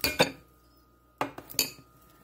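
Metal spoon clinking against the side of a pot while stirring cream of wheat: two sharp knocks right at the start, then a quick run of three or four more a little past the middle.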